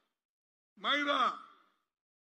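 A man's voice through the microphone: a single drawn-out vocal sound of about a second near the middle, its pitch rising and then falling.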